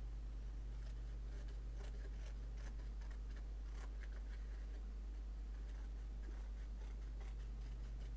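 Pencil and ruler on cardboard, marking measurements: short, irregular scratches and light taps that come in two spells. A steady low electrical hum runs underneath.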